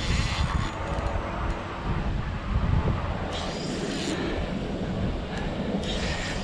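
Steady rush of water with wind buffeting the microphone, a low rumbling noise with a brief louder hiss about three and a half seconds in.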